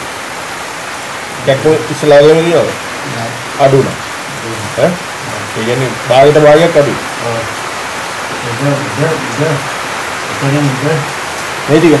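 A man's voice speaking in short phrases with pauses between them, over a steady background hiss.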